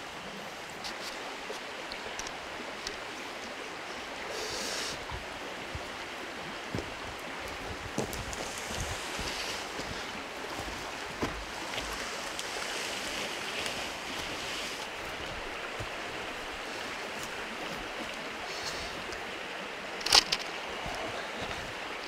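A steady outdoor rushing noise with no clear rhythm, with a few faint clicks and knocks.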